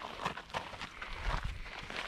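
Irregular footsteps on a dry dirt hiking trail, walking uphill on a steep slope.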